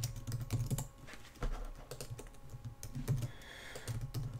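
Typing on a computer keyboard: an irregular run of key clicks with brief pauses.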